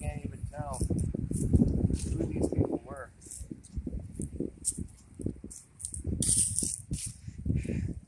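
Footsteps through grass and dry fallen leaves, a string of irregular low thuds and rustles, with a brief crisp rustle about six seconds in.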